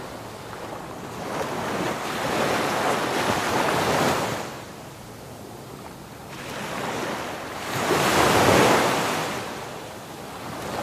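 Small waves breaking and washing up the beach in two surges, the second, near the end, the louder.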